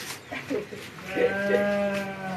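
A cow mooing: one long call at a steady pitch, starting about a second in.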